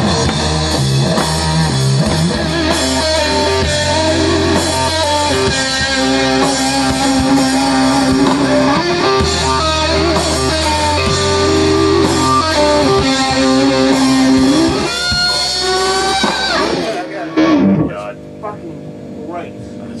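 Electric guitar played over a rock backing track in a studio control room, with long held notes. A rising slide about fifteen seconds in leads to the music stopping a couple of seconds later.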